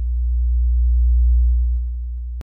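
A steady, very deep electronic bass tone that swells and then eases off slightly: a sub-bass sound effect for a headphone intro.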